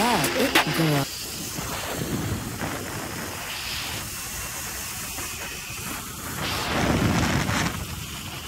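A rap track with vocals cuts off about a second in, leaving wind rushing over the microphone of a moving camera alongside a Sur-Ron electric dirt bike. The rushing swells near the end.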